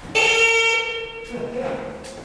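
The buzzer of a KONE hydraulic elevator sounds once at a steady pitch for about a second.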